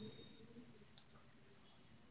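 Near silence: room tone, with a faint high tone that stops about half a second in and a single faint click about a second in.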